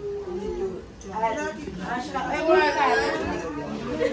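Chatter of a group of adults and children talking over one another, with high, excited voices, growing busier and louder from about a second in.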